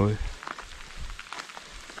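Rain falling steadily, with scattered single drops ticking close by.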